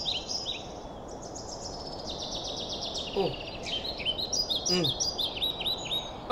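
Birds chirping in quick runs of short, high, repeated call notes over a steady background hiss.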